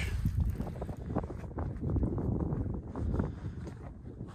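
Wind blowing across the microphone, a low uneven rumble that fades toward the end.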